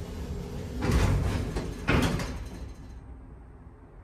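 Schindler 300A elevator's stainless steel doors sliding open, loudest about a second in, with a sharp knock about two seconds in, then settling.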